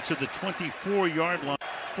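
A man's voice talking, with a brief abrupt dropout about one and a half seconds in.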